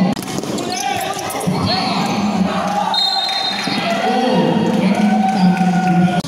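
A basketball bouncing on a hardwood gym court during play, with players' voices carrying in the hall.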